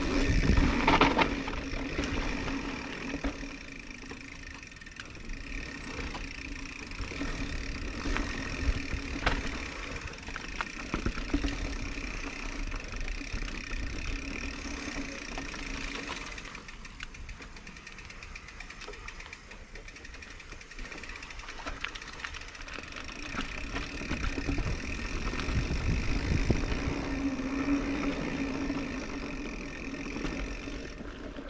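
Mountain bike descending a dirt forest singletrack: tyres rolling and crunching over dirt, rocks and roots, with the bike rattling and clicking over bumps. Wind on the camera microphone adds a low rumble that is strongest at the start and again in the last few seconds.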